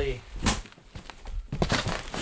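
A cardboard shipping box being handled and pushed aside: a brief louder scrape about half a second in, then scattered short knocks and rustles.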